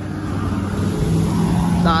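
Lamborghini Urus's twin-turbo V8 driving slowly past close by: a low, steady engine note that grows slightly louder.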